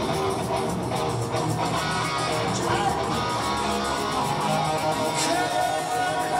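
Hard rock band playing live, led by electric guitar, loud and continuous, recorded from within the arena audience.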